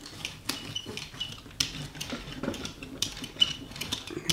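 Hand brayer rolled back and forth over wet paint on a gel printing plate, giving irregular small clicks and short tacky scrapes.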